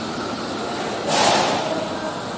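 Steady construction-site din echoing in a large steel-framed hall, with a brief loud rushing burst about a second in.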